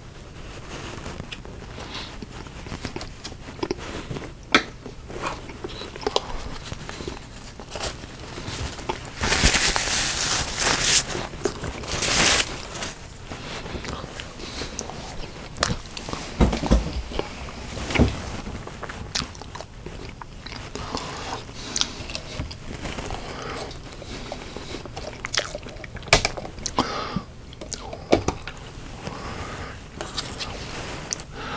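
Close-miked chewing and biting of food, with frequent short wet mouth clicks. A louder, noisier stretch comes about nine to twelve seconds in.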